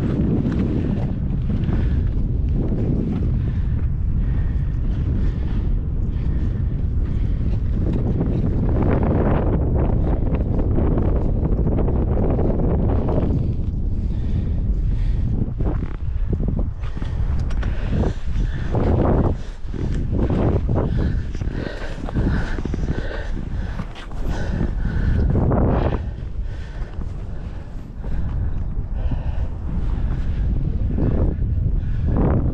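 Wind buffeting a GoPro's microphone: a loud, steady low rumble that swells and drops in gusts.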